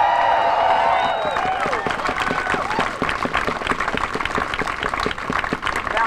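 Crowd cheering with many voices at once, giving way within the first couple of seconds to steady applause and clapping.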